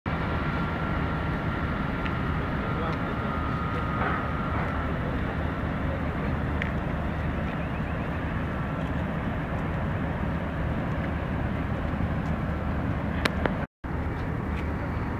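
Steady low rumble of distant road traffic and the city below. A thin steady tone sits over it for the first five seconds or so.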